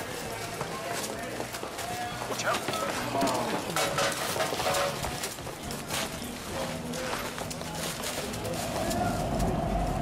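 Street ambience: indistinct background chatter with footsteps and scattered knocks and clatter. A steady hum comes in near the end.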